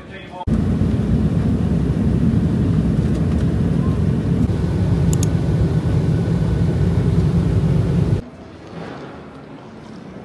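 Steady low roar of an airliner's engines and airflow, heard from inside the cabin in flight; it cuts off suddenly near the end.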